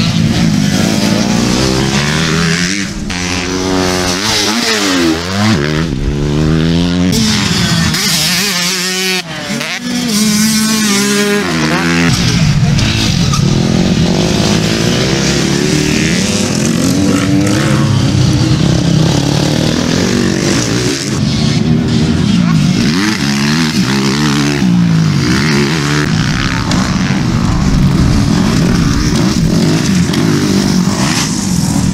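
Several motocross bikes racing, engines revving up and down through the gears as they pass, their pitch rising and falling repeatedly.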